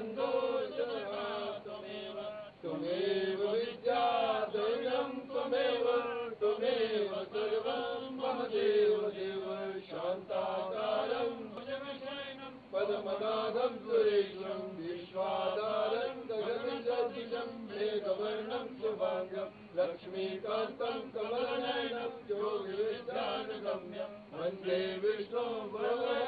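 Male voices chanting Sanskrit hymn verses in a continuous, melodic recitation.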